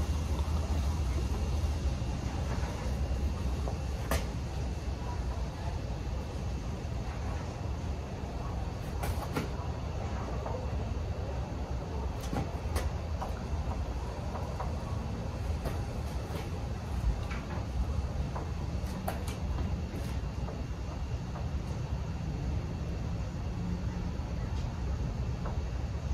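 Steady low background rumble with a few faint, scattered clicks from a caulking gun as clear silicone is squeezed into the trunk lid's mounting holes.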